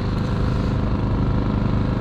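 Outboard motor of a small skiff running steadily with the boat under way: an even, unchanging low hum.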